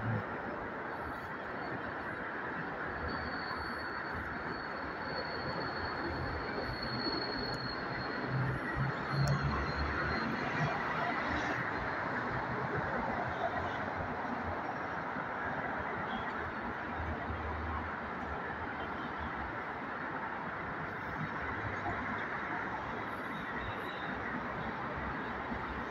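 Steady hum of city road traffic from the street below, with a few low rumbles about 8 to 10 seconds in and again near 17 seconds.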